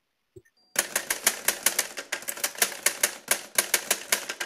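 Typewriter sound effect: a rapid, uneven run of key clacks, several a second, starting just under a second in.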